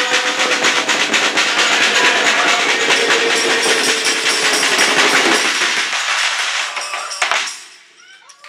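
A group of carolers singing with a tambourine shaken throughout. The held final note and the jingling fade and stop about seven seconds in.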